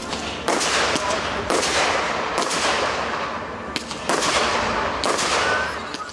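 Fireworks going off: a run of sharp reports roughly a second apart, each trailing off in a fading hiss.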